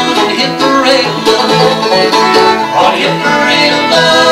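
Bluegrass band playing an instrumental break, with banjo, mandolin and acoustic guitar picking together.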